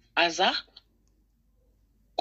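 A person's voice saying one short word just after the start, then near silence.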